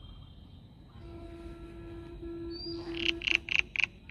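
A bird calling: a quick run of about five short, high, loud calls near the end, over a steady low hum that starts about a second in.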